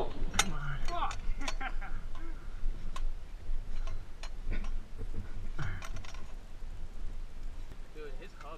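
Loose motorcycle drive chain being handled by gloved hands, its metal links clinking and ticking in scattered, irregular clicks. The chain is slack because the rear sprocket has come loose, with its bolts stripped out and only one left.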